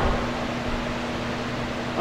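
Steady room noise in a pause of speech: an even hiss with a faint, steady low hum.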